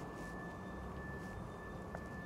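Quiet city street background: a low, steady rumble of distant traffic with a thin, steady high-pitched whine over it.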